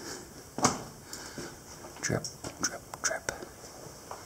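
Irregular footsteps scuffing and crunching on a rocky cave floor, a dozen or so short, uneven steps.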